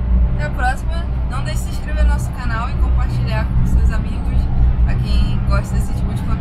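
Steady low road-and-engine rumble inside the cabin of a car driving on the highway, with people talking over it.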